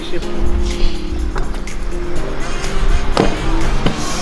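Background music with held notes over a steady low beat. Under it, a stunt scooter's wheels roll on stone paving, with a few sharp clacks of the scooter hitting the ground; the loudest comes about three seconds in.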